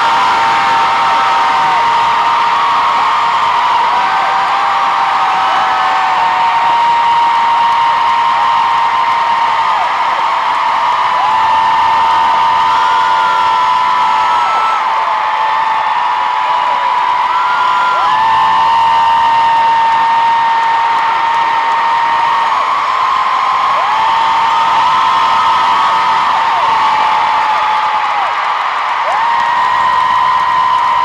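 Arena crowd of fans screaming and cheering without a break. Long, high-pitched screams are each held for several seconds over a steady roar, all of it loud.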